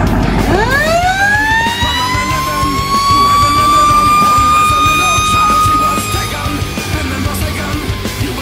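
Fire engine's siren winding up from a low growl to a steady high wail over about two seconds, holding, then winding down near the end as the truck pulls out.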